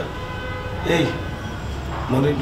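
A man's short spoken syllable about a second in, over a steady low hum.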